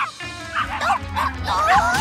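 Cartoon puppy yipping and barking in several short, high calls over background music.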